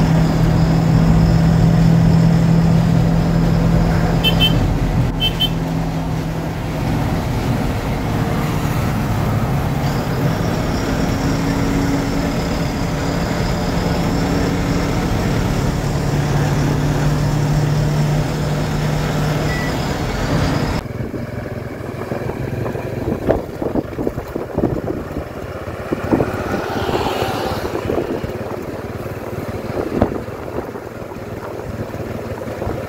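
Tata 916 bus's 3.3-litre four-cylinder diesel engine running while the bus drives along, heard from inside the driver's cab: a steady low drone with a faint high whine above it. About two-thirds of the way in, the sound switches abruptly to an uneven outdoor road sound with scattered sharp knocks.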